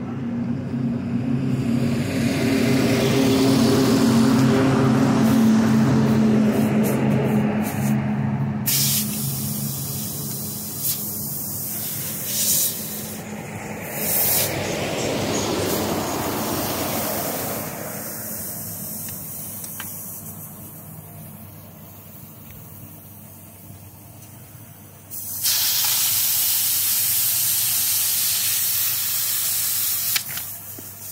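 Compressed air hissing from an air hose at a motorcycle's rear tyre: a few short blasts in the middle, then a loud steady hiss for the last few seconds as the tyre is filled after a puncture repair. A low steady machine hum fills the first third.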